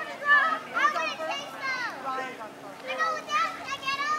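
Spectators' chatter, with high children's voices talking and calling out over one another.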